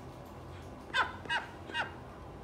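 Call duck quacking three times in quick succession, each quack short and falling in pitch, the first the loudest.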